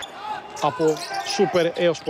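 Basketball dribbled on a hardwood court, a series of short bounces, under a man's commentary voice.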